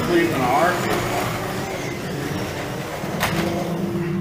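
1/24 scale slot cars running on a multi-lane slot car track: a steady whirring of small electric motors and tyres on the plastic track. A brief snatch of voice comes about half a second in.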